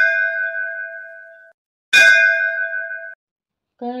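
A bell-like chime ringing and fading, struck again about two seconds in, each ring dying away over about a second and a half. A singing voice comes in just at the end.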